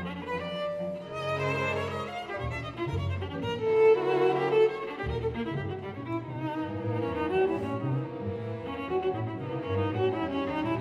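Solo viola playing a busy line of quick notes over a string orchestra, with cellos and double basses sustaining underneath; the music swells louder about four seconds in.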